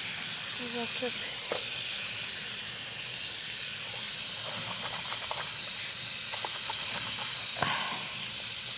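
Water running steadily from a bathroom sink tap into a basin, an even hiss, with faint low voices.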